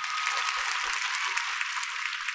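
Studio audience applauding: a steady, dense clatter of many hands clapping, sounding thin and bright.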